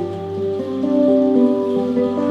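Instrumental introduction played live on plucked strings: held, ringing notes move in a slow melody over a low bass note that comes in at the start.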